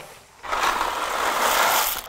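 Dried gemelli pasta pouring out of a cardboard box into a pot of water, a steady rushing rattle that starts about half a second in and lasts about a second and a half.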